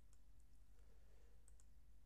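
Near silence: room tone with a low hum and a few faint computer mouse clicks, the pair of them about one and a half seconds in.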